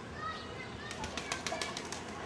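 Faint outdoor voices at a distance, with a quick run of about eight sharp clicks about a second in.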